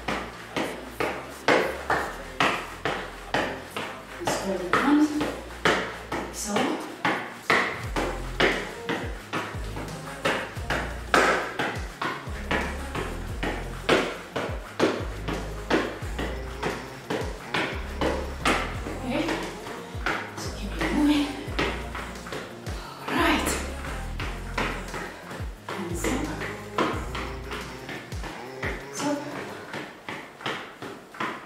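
Rebound boots (Kangoo Jumps) landing over and over on a tile floor during bouncing steps, about two sharp clacks a second, over background music.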